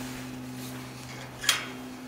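A single sharp metal click about one and a half seconds in, from a barrel bolt latch on a pony cart's spares compartment being handled, over a faint steady hum.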